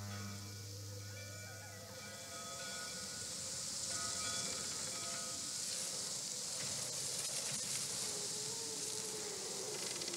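Film soundtrack: held low music chords fade out in the first two seconds, giving way to a steady rising hiss of eerie night ambience. From about six seconds in, a thin, wavering tone slowly drifts down in pitch over the hiss.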